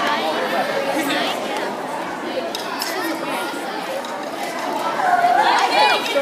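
Crowd chatter in a large hall: many people talking at once, with one voice rising louder near the end.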